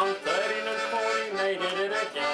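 Button melodeon playing a folk-song accompaniment, its reed chords and melody notes changing every fraction of a second, after the last sung word ends at the very start.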